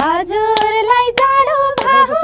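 A woman singing a Nepali folk song in long held notes, with hand claps keeping time a little under twice a second.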